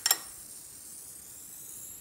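One sharp metallic clink just at the start as the hot stovetop moka pot is handled, then a faint steady hiss.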